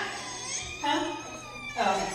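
Quiet, high-pitched voice sounds in two short bursts, about a second in and again near the end.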